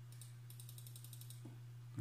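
Computer mouse scroll wheel ratcheting in a rapid run of faint clicks, about ten a second for a second or so, over a steady low hum.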